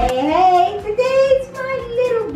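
A woman singing, with long held notes that slide up and down in pitch.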